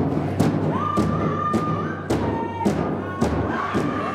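Powwow big drum struck in a steady beat, about two strokes a second, with singers holding long high notes over it.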